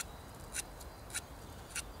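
Mora Outdoor 2000 knife scraping bark off a stick in four short strokes, about one every half second. The knife does not strip the bark well.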